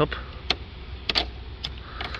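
Four sharp clicks, two of them close together just after a second in, as a plastic clip on the engine's intake is worked open with a screwdriver, over a low steady hum.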